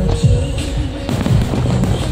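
Fireworks bursting with a few sharp reports over loud music, as in a pyromusical display.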